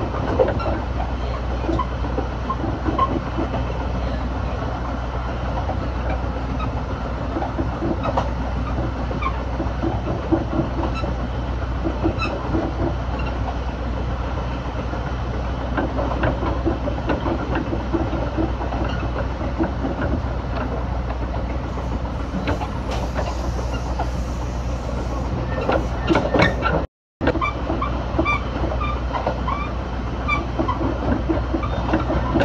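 A train running along the rails, heard from on board: a steady low rumble with the wheels clacking over rail joints. The sound cuts out for a moment near the end.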